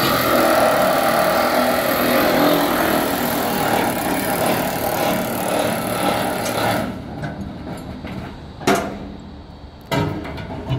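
A vehicle's engine running and slowly fading, its sound dropping away sharply about seven seconds in. A single sharp knock follows near the end.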